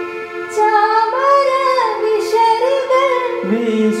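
A woman singing a slow Malayalam song melody with gliding, ornamented notes over chords held on an electronic keyboard.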